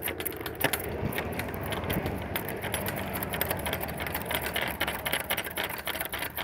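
Light metallic clinking and jangling from a trailer door's steel lock handle and keeper as a wire is worked through the hasp, a quick run of small clicks that keeps going, over a steady low hum.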